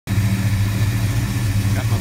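Buick 455 cubic-inch V8, fitted with big-port heads, an Edelbrock Performer intake and a fairly large Crower cam, idling steadily with a slightly uneven beat. The owner calls it running sweet.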